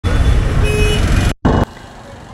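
Loud street traffic and road noise recorded from a motorcycle moving through heavy traffic, with a brief horn toot about half a second in. The sound cuts out for an instant about two-thirds of the way through, comes back briefly, then drops to much quieter traffic noise near the end.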